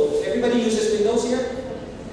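Only speech: a man lecturing into a handheld microphone, his voice trailing off near the end.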